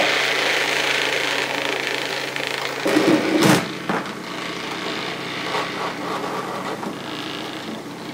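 Cabela's vibratory case tumbler running: a steady motor hum with the rattle and hiss of brass .223 casings churning in corncob media. About three seconds in there is a brief knock as the lid is set onto the bowl, and after it the rattle is quieter.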